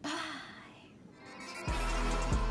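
A woman's short breathy vocal sound, falling in pitch and fading, as she waves goodbye. Near the end, outro music cuts in suddenly with a deep bass and a drum beat.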